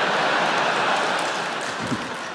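Large theatre audience laughing and applauding after a punchline, a dense wash of crowd noise that eases off slightly toward the end.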